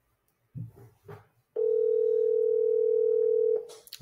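US ringback tone of an outgoing call heard through a smartphone's speakerphone: one steady ring lasting about two seconds, starting about a second and a half in. It is the sign that the number is ringing at the other end and has not yet been answered. A couple of short soft sounds come just before it.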